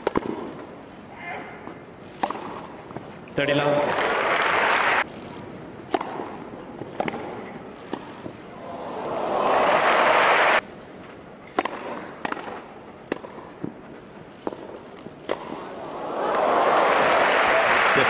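Tennis ball struck by racquets in rallies on a grass court, a series of sharp pops, with a crowd cheering that swells and is cut off abruptly about ten seconds in, and crowd applause rising near the end.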